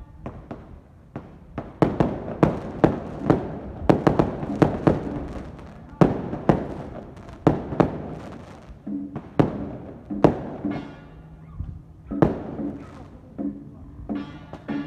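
Firecrackers going off in a string of loud, irregular bangs from about two seconds in until about ten seconds in, with one more bang near the end. Procession music plays underneath.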